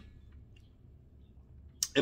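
Quiet room tone with a faint low hum during a pause in a man's talk, and one short sharp click near the end.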